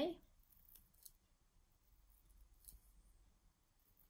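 Faint crinkling of a plastic piping bag as it is squeezed to pipe buttercream through a grass nozzle. A few scattered soft ticks over a quiet room.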